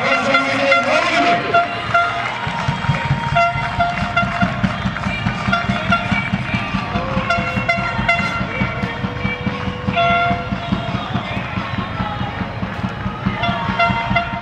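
Horns tooting again and again in short blasts over a continuous low rumble.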